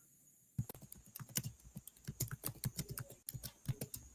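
Computer keyboard typing: a faint run of quick, irregular keystrokes starting about half a second in.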